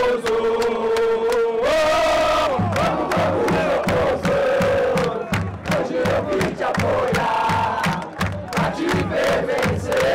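Football crowd singing a chant together, with a steady drumbeat joining in about two and a half seconds in.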